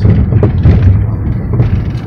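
A car being driven, heard from inside the cabin: a steady low rumble of road and engine noise, with a few dull thuds in the first second.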